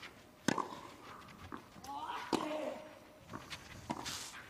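Tennis ball struck hard by racket twice, about two seconds apart, the second shot with a player's grunt; light taps of footsteps and ball bounces on clay near the end.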